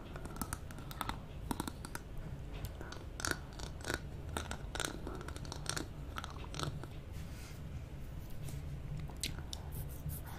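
Wet mouth sounds of a twist lollipop being licked and sucked close to a microphone: irregular smacks and clicks of tongue and lips on the hard candy, over a steady low hum.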